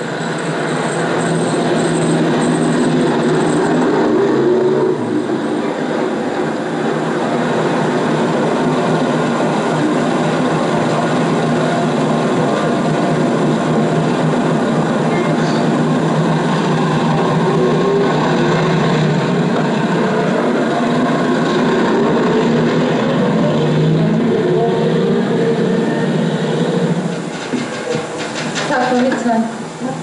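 City bus diesel engine running with a steady drone, mixed with street traffic, dropping away near the end.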